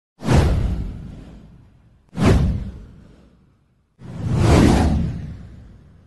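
Three whoosh sound effects on a news intro title card. The first two start suddenly and fade away over about a second and a half each; the third swells up more gradually before fading.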